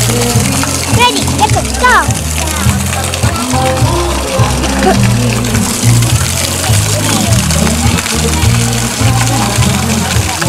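Upbeat guitar background music with a steady beat, with brief children's voices about a second or two in.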